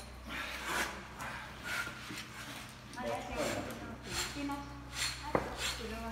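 Knives slicing and scraping along the hide of a hanging cow carcass in short repeated strokes as it is skinned, with one sharp click about five seconds in.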